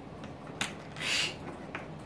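A caique parrot handling a yellow puzzle piece on a shape-sorting board: a light click, then a short hissing scrape about a second in, and another faint click near the end.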